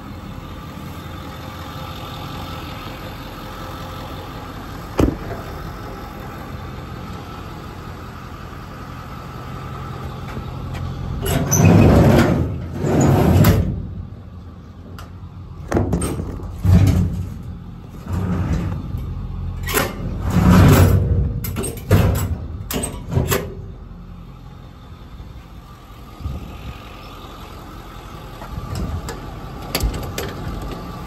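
Ford 6.4 Power Stroke V8 turbodiesel idling steadily. There is a single sharp click about five seconds in, then a run of loud thumps and rushing noise between roughly eleven and twenty-four seconds in.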